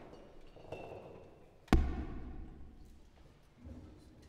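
A single sharp thud about halfway through, the loudest sound, followed by a low boom that dies away over about a second, with small scattered knocks and a brief faint ringing tone around it and a softer thud near the end.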